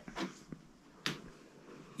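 A few short, faint clicks, the sharpest about a second in, in a quiet room.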